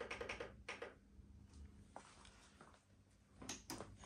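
A quick run of faint clicks in the first second, then a few scattered ticks and a couple more near the end, over a faint steady hum: switches and buttons being worked as a hi-fi amplifier is turned on.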